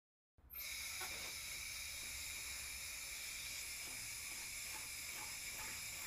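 High-speed surgical power burr running with a steady, high-pitched whining hiss as it grinds the tibiotalar joint surfaces of a synthetic bone model, roughening the subchondral bone and correcting alignment for an ankle fusion. It starts abruptly about half a second in.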